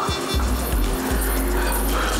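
Dramatic background score: a low, sustained drone that comes in about a third of a second in, with faint held tones above it.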